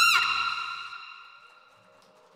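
Saxophone's final held note with vibrato falls off in pitch and cuts off just after the start, over a backing track. The note's echo and the accompaniment then die away to near silence.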